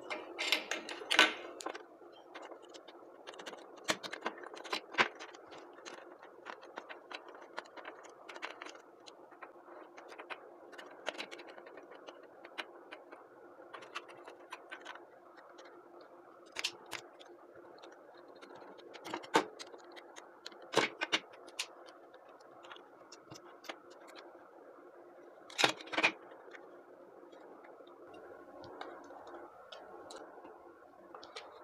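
Scattered clicks and knocks of plastic parts being handled as an electric mosquito racket's handle is put back together around its circuit board, with a few louder double clicks, over a faint steady hum.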